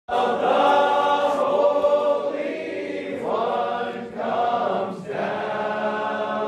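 A choir singing, several voices together in held phrases that break about once a second.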